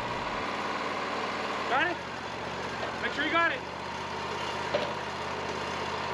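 Wood-Mizer LT40 portable band sawmill's engine running steadily at idle. A voice calls out briefly twice, about two and three and a half seconds in.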